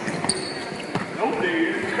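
A basketball dribbled on a hardwood gym floor during one-on-one play, a few bounces, with a brief high squeak near the start and voices in the background.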